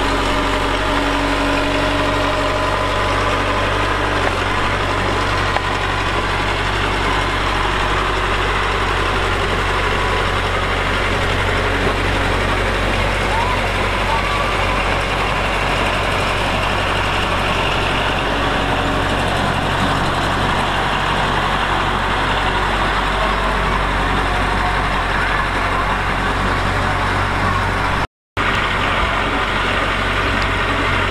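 Small crawler bulldozer's diesel engine running steadily as the blade pushes a pile of dirt and stone. The sound drops out for a moment near the end.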